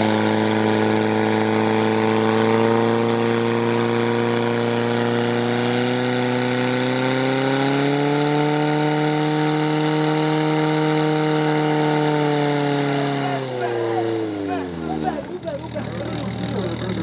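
Portable fire pump's engine running hard at high revs while pumping water into the hose lines. Its pitch creeps up a little about halfway through, holds, then drops away as the engine is throttled back near the end.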